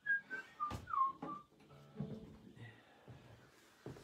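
A person whistling a short phrase of quick notes that step down in pitch and end in a downward slide, all within the first second and a half. A few soft knocks follow.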